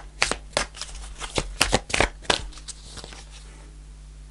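Oracle card deck shuffled by hand: a quick run of card flicks and snaps that stops about two and a half seconds in.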